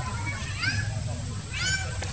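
Several short, high, arching squeals from young macaques, one after another, the loudest about a third of the way in and another near the end.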